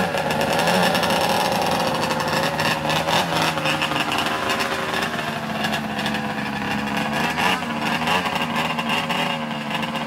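Race snowmobile engine running close by at a low idle, with a few small blips of the throttle that briefly waver its pitch.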